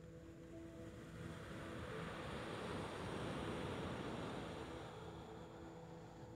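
A wave breaking and washing up a sandy beach: a rush of surf that swells about a second in, is loudest around the middle, and fades away near the end. Soft ambient music with steady held tones continues underneath.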